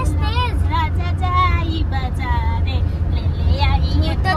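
Voices singing a melody together inside a moving car's cabin, over the steady low rumble of the engine and tyres.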